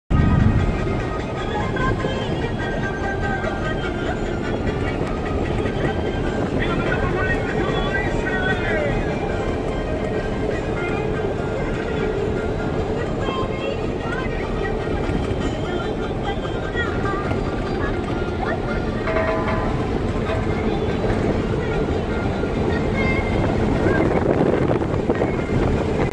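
Steady engine and road noise heard inside a vehicle's cabin while it drives across the salt flat. The sound cuts off abruptly at the end.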